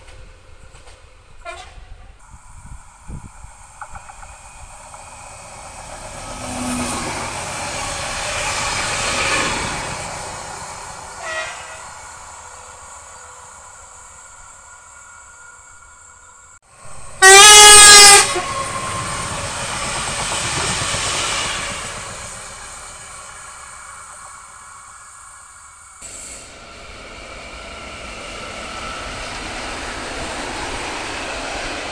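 Trains running past on the rails, their noise swelling and fading several times. About 17 seconds in a train horn gives one loud blast of a little over a second, loud enough to overload the recording, and the train then runs on past.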